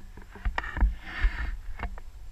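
Outdoor wind rumbling on a handheld action camera's microphone, with a few light clicks and taps and a soft hiss a little past the middle.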